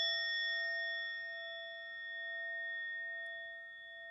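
A meditation bell rings on after being struck, several clear tones fading slowly, its loudness gently swelling and ebbing.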